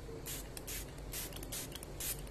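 Fine-mist pump spray bottle squeezed in quick repeated puffs onto hair, each a short hiss, about two a second.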